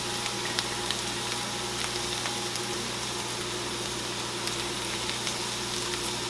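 Sliced potatoes with bacon bits and ramp bulbs frying in a pan: a steady sizzle with scattered small pops.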